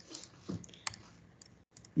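A few faint, scattered clicks of a computer mouse and keyboard as a spreadsheet is worked.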